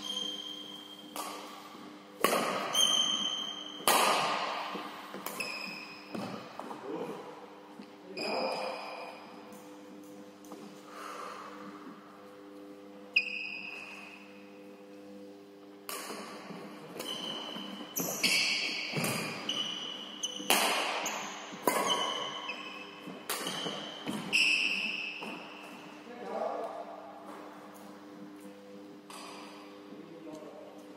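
Badminton rally on a wooden indoor court: repeated sharp racket strikes on the shuttlecock at uneven intervals, echoing in the hall, mixed with short squeaks of sports shoes on the floor. A steady low hum runs underneath.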